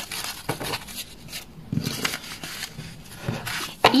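Paper envelopes rustling and sliding against one another as a stack of handmade paper envelopes is leafed through by hand, with soft irregular rustles and light taps.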